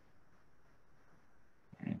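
Near silence, with a faint steady background hiss during a pause in a lecture. A man's voice starts again near the end.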